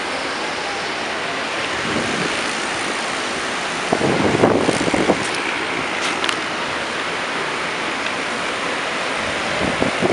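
Downtown street ambience: steady city traffic noise, with a louder, rougher stretch about four seconds in that lasts a little over a second.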